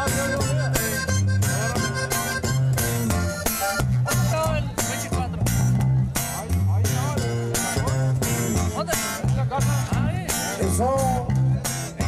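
Live norteño-style band playing an instrumental passage: button accordion carrying the melody over a strummed twelve-string guitar and a steady bouncing bass line.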